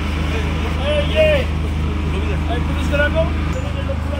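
Tractor's diesel engine idling steadily, a low even hum with a fine regular pulse, with faint voices of people talking behind it.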